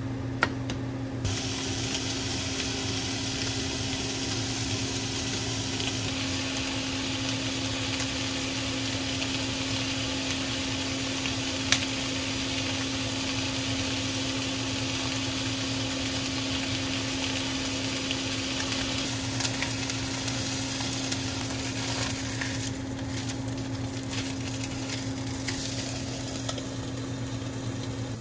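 Food sizzling on an induction hob: a steady frying hiss with a low electrical hum under it and a couple of sharp utensil clicks.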